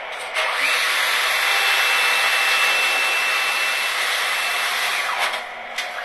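ATM cash dispenser whirring as it counts out and presents banknotes: an even mechanical noise that starts about half a second in and stops about five seconds in, with a faint steady whine over the middle of it.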